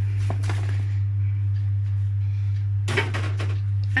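Cut raw potato pieces tipped from a plastic colander into a metal baking tray, clattering onto the metal with a brief clatter just after the start and a denser spill about three seconds in. A steady low hum runs underneath throughout.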